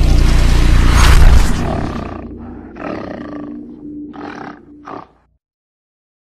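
Logo-sting sound effect: a loud beast-like roar over a heavy rumble that fades over about two seconds. Three shorter slashing bursts follow, then it cuts off about five seconds in.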